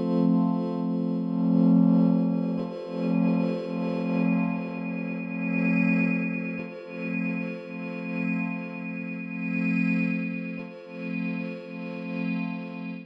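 Dawesome MYTH software synthesizer playing a sustained low pitched tone rich in overtones, re-struck several times, swelling and dipping in loudness, as its Route module's gain is turned to blend the processed module chain with the dry resynthesis oscillator.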